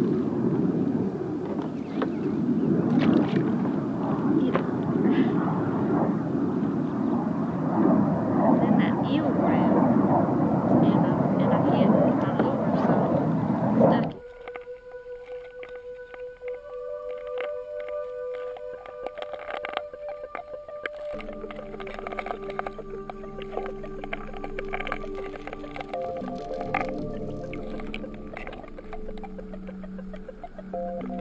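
Wind buffeting the microphone, with scattered sharp clicks. About halfway through it cuts off abruptly to background music with held notes.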